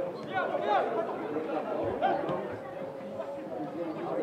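Voices shouting and chattering around a football pitch during play, with a couple of loud calls in the first second.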